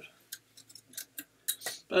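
A handful of faint, short clicks and taps at irregular spacing as steel-tip darts are handled and pulled from the dartboard.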